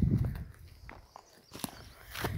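Footsteps on a dry, grassy and stony hillside path: a low rumble at the start, then a few short scuffs and crunches.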